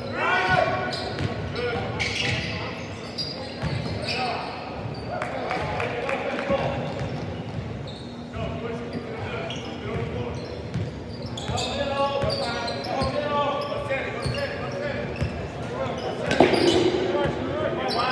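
A basketball being dribbled on a hardwood gym floor, short bounces at an uneven pace, echoing in a large gym, under indistinct voices of players and onlookers. A louder burst of sound comes near the end.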